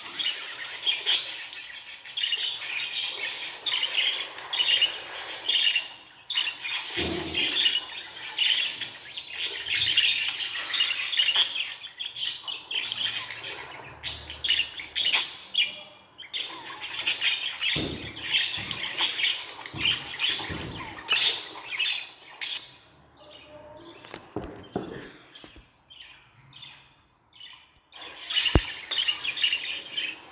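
Budgerigars chattering: a run of rapid, high-pitched chirps and squawks with short breaks. Near the end the chatter thins to scattered chirps, and there is a single sharp click before it picks up again.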